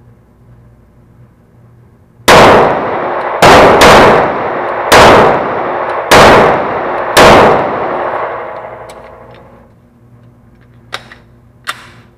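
Six 9mm shots from a Canik TP9SF pistol, roughly a second apart with one quick double, each ringing off the range's concrete walls, the echo dying away over a couple of seconds after the last shot. Two short sharp clicks follow near the end.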